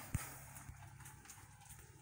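Two light knocks right at the start, then faint low handling rumble and room noise as a phone camera is grabbed and lifted.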